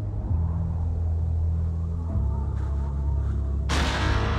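Film trailer soundtrack: a deep, low sustained drone whose notes shift twice, then a sudden loud burst of sound near the end.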